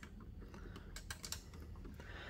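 A quick run of faint, small plastic clicks as a modem's plastic antennas are swivelled on their hinges, over a low room hum.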